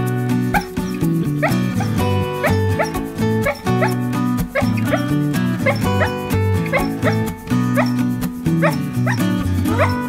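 A dog whimpering and yipping in its sleep during a bad dream, a string of short rising cries over background music.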